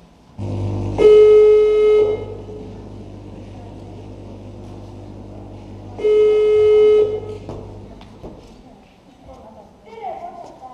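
A loud, steady horn-like tone sounds twice, each blast about a second long and about five seconds apart, starting and stopping abruptly over a low rumble that fades out near the end.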